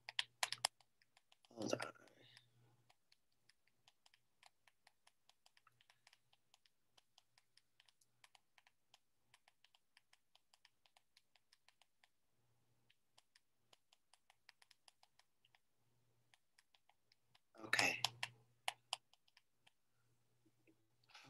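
Faint, irregular computer keyboard typing: many light key clicks, louder in the first half-second. A short spoken sound comes about two seconds in and again near the end.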